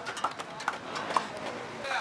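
Background crowd chatter with a run of short, sharp clinks and knocks from steel plates and dishes being handled.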